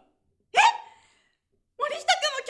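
Speech only: a single short vocal interjection with rising pitch, like a surprised "eh?", about half a second in. After a pause, a voice starts speaking again near the end.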